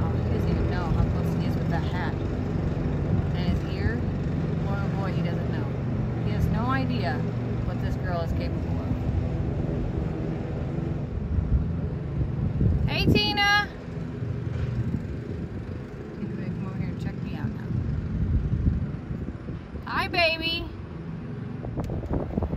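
Riding lawn mower engine running steadily, fading out about halfway through. A couple of short, high-pitched calls cut through, the loudest about two-thirds of the way in and another near the end.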